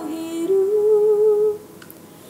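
A woman's voice singing one long held note that wavers slightly in pitch and stops about one and a half seconds in.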